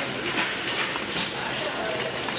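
Steady store background noise with faint, distant voices.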